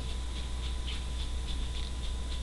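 A pause in speech filled by a steady low hum, with a few faint ticks.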